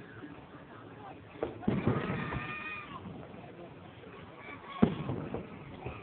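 Aerial fireworks shells bursting: a few sharp bangs, two close together about a second and a half in and a louder one near the end. A high, drawn-out, whistle-like tone carries on for about a second after the first bangs.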